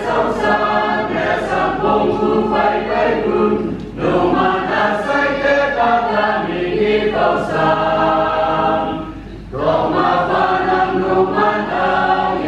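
A mixed choir of men's and women's voices singing a hymn, in long phrases with two brief breaks, about four seconds in and about nine and a half seconds in.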